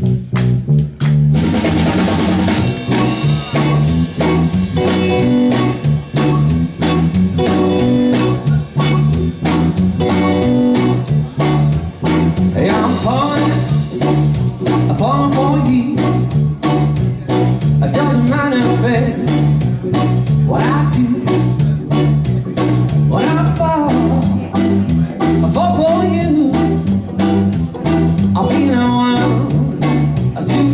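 Live blues band playing an instrumental song intro: electric guitar over bass guitar and drum kit, with keyboard. Lead guitar lines bend in pitch over a steady bass groove.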